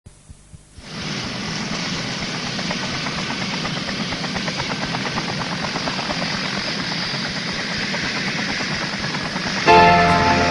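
Helicopter rotor sound effect opening a song: a steady, fast-pulsing chop that fades in about a second in. Just before the end, keyboard notes come in.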